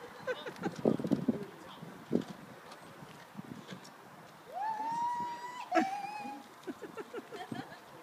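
Short bursts of laughter in the first second or so. About halfway through, a voice gives one long, high call that rises and then holds steady for over a second, followed straight away by a shorter, slightly lower call.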